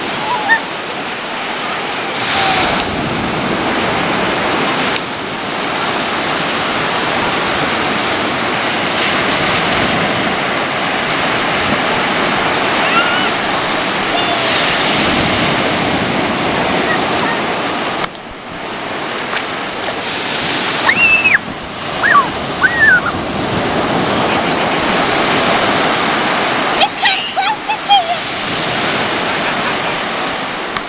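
Sea surf breaking and washing up the beach, a loud steady rush that swells with each wave. Short high shouts from children break in a few times in the second half.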